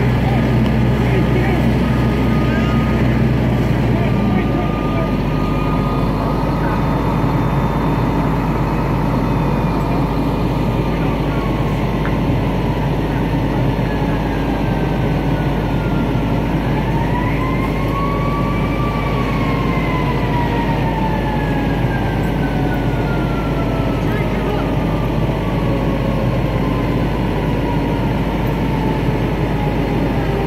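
Fire engine's engine running steadily at the scene, a loud constant drone, with a siren sounding over it: its pitch falls slowly, rises once about halfway through, then slowly falls again.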